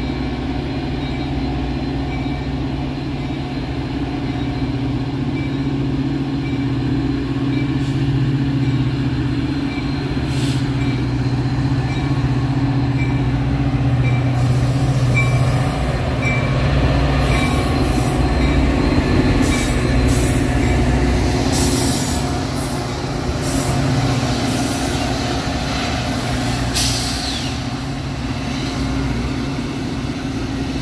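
Metra EMD F40PHM-2 diesel locomotive running steadily as it approaches and passes, followed by the rumble of its bilevel passenger coaches. Squeals and hissing from the wheels and brakes come in through the second half.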